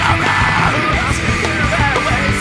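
Loud, dense heavy rock music with a driving beat and yelled vocals.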